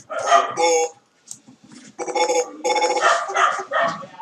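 A dialogue audio track being scrubbed frame by frame in Blender's timeline. It comes out as short, choppy vocal fragments with stuttering repeats, in two stretches with a pause between them.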